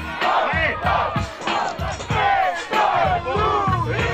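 A crowd at a freestyle rap battle shouting and cheering together, an eruption of many voices after a rapper's punchline, over a hip hop beat.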